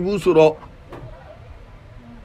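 A man's voice lecturing, ending about half a second in, followed by a pause with only faint steady background hiss.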